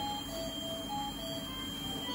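Background music: a simple melody of short, separate notes at changing pitches, over a steady high tone and a low hum.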